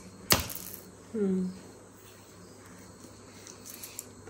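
Faint, steady cricket chirping in the background, with one loud sharp click a third of a second in, as a playing piece strikes the tiled floor during a game of chowka bhara. About a second in, someone makes a brief vocal sound with a falling pitch.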